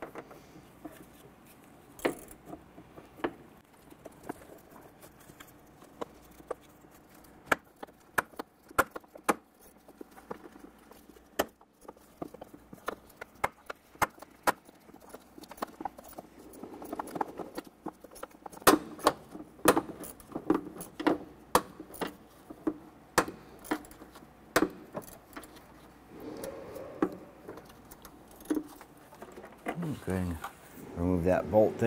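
Irregular sharp metal clicks and clinks of a ratchet, socket and extension turning out a 10 mm bolt on the intake manifold. The clicking comes in bunches, most busily in the second half.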